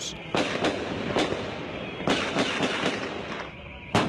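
Gunfire in an intense exchange of shots: an irregular string of sharp reports, several in the first second and another cluster around two seconds in.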